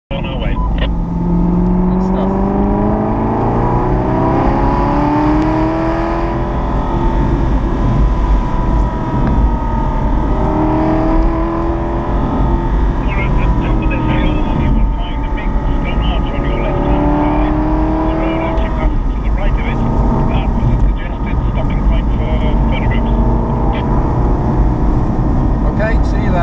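The Aston Martin V8 Vantage N400's V8 engine heard from inside the car on the move. Its pitch climbs repeatedly as it pulls, then drops back at each gear change or lift-off, over a steady low rumble.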